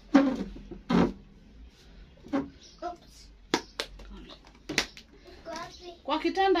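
A toddler's short vocal sounds, two loud ones in the first second and fainter ones after, then a few sharp taps and knocks about three and a half to five seconds in.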